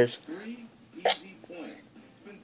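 A single short mouth sound about a second in: spitting tobacco dip juice into a plastic spit cup.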